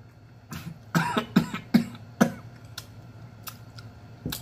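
A man coughing in short, sharp coughs, about five in quick succession and then a few fainter ones, after cayenne pepper sucked in with a bite caught in his throat.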